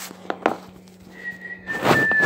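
Phone and aluminium-foil handling noises, with a few clicks and a louder rustle near the end, as a foil-wrapped cake is carried. From about halfway through, a thin high whistle-like tone is held, sagging slightly in pitch.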